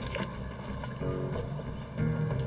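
Background music score: a low sustained drone, joined about a second in by a higher held chord.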